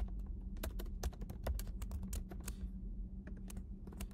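Typing on a computer keyboard: a quick run of key clicks that thins out about two and a half seconds in, over a faint steady hum.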